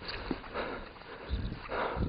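Heavy breathing close to the microphone, short breaths about every half second, with dull low thumps of footsteps or camera handling underneath.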